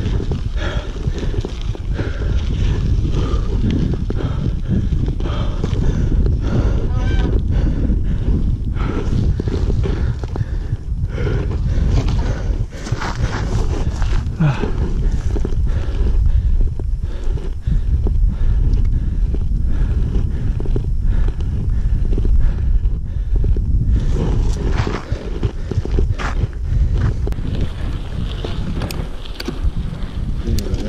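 Wind buffeting a helmet- or bar-mounted action camera's microphone as a mountain bike rides a dry dirt singletrack. Many clicks and knocks come through, the bike rattling over bumps.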